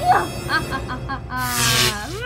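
A girl laughing in short, high-pitched bursts over background music.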